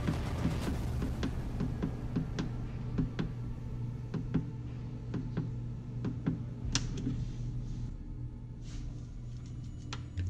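Repeated clicks of the buttons on an automatic pet feeder's control panel being pressed to set the feeding time, over faint background music.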